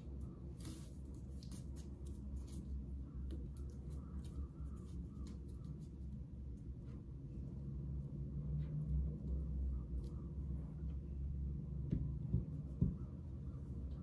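Cloth hockey tape being wrapped by hand around the grip of a hickory golf club: faint rustling and small clicks of the tape and hands on the shaft, with a couple of light taps near the end, over a steady low hum.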